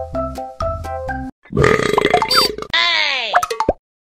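Children's electronic music with a steady beat stops about a second in. Comic sound effects follow: a rough, noisy sound with short whistling glides, then a tone that sweeps downward and cuts off suddenly.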